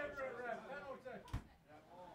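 Men's voices reacting, without clear words, through the first second, then a single sharp thump a little over a second in.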